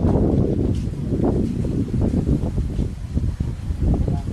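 Wind buffeting the camera's microphone outdoors, a loud, uneven low rumble that gusts up and down.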